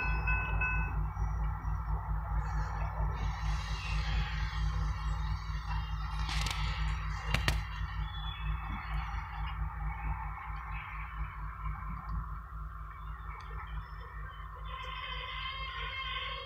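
Freight cars rolling past, a steady low rumble, with two sharp clicks about a second apart midway. A grade-crossing bell's evenly spaced ringing stops about a second in.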